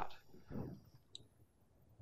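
A quiet pause with faint room tone and a single short, faint click about a second in.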